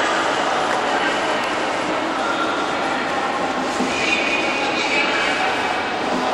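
Intercity passenger coaches rolling slowly along the platform track, a steady rumble of wheels on rails, with people talking on the platform.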